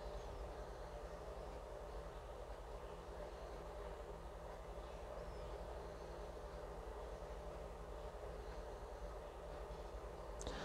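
Faint, steady low hum of room tone, with no distinct sound from the measuring on the paper.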